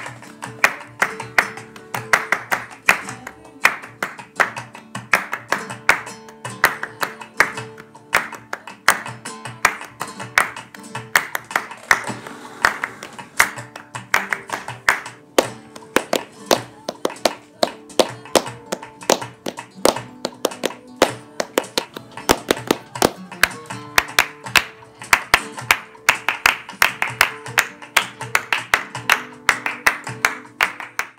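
Flamenco palmas: hands clapping in a rapid, steady rhythm over a flamenco guitar part.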